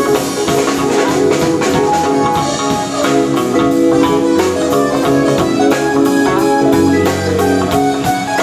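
A jazz group playing live: electric keyboard and electric bass over a steady drum-kit groove with cymbal strokes, and a ringing mallet line from vibraphone.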